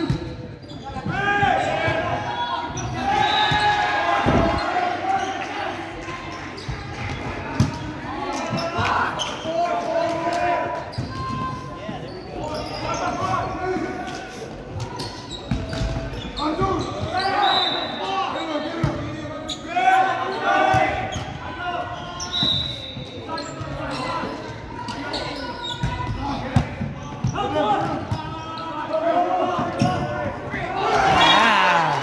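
Indoor volleyball play: the ball being struck and hitting the hardwood floor in sharp knocks, a few seconds apart, over players' voices calling out, all echoing in a large gymnasium.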